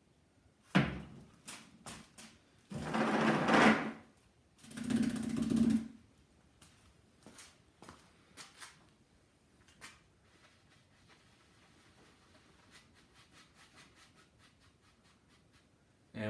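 A paintbrush being cleaned: a sharp click, then two loud noisy bursts of rubbing about a second long each, followed by a few light taps over a low room hiss.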